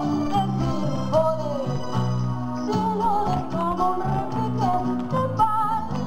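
Woman singing a Spanish flamenco-style song into a microphone over instrumental accompaniment, her melody bending and ornamented.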